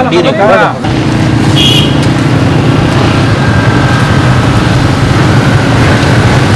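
A car engine running steadily, coming in abruptly about a second in after a moment of speech.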